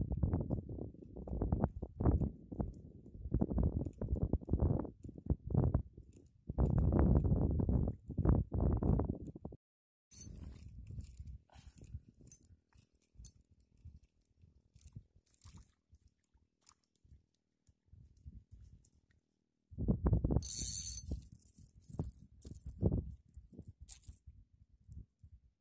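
Wind buffeting a phone microphone at the shore, heard as irregular low rumbling gusts that are loudest in the first half. Mixed with it are handling knocks from the rod and reel, then quieter stretches of faint clicks.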